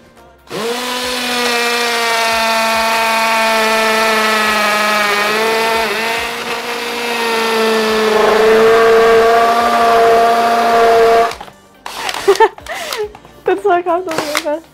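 Cordless drill running steadily as its bit bores into an iPad's glass screen; the motor's pitch sags briefly under load about five seconds in, and the whine cuts off suddenly about eleven seconds in.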